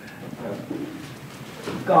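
A quiet, low-pitched human voice murmuring or humming, then a person starting to read aloud near the end.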